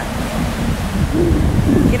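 Ocean surf washing and breaking, with wind rumbling on the microphone; a voice starts calling out right at the end.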